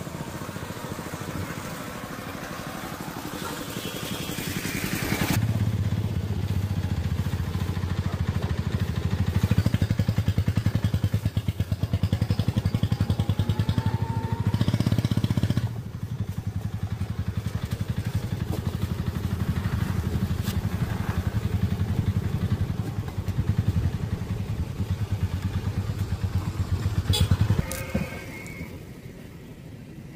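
A nearby motor vehicle's engine running steadily at idle, a low, even chug, amid roadside street noise. It steps abruptly louder about five seconds in, dips about sixteen seconds in, and fades out near the end after a few clicks.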